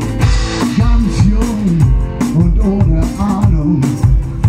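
Live band music: a man singing over guitar and a steady drum beat.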